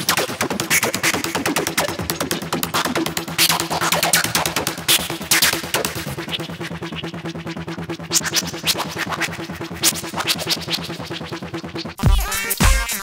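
Electronic music: a synthesizer over a busy drum-machine beat, with steady low held notes. Around the middle the high end dulls for a couple of seconds as the synth's filter cutoff is turned down.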